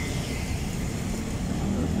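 Road traffic: car engines running and passing close by over a steady low rumble, one engine growing louder toward the end as a car comes near.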